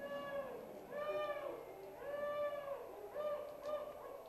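A small stage dragon gives a string of about five pitched, animal-like cries that rise and fall. The longest comes about two seconds in, and two short ones close together come near the end.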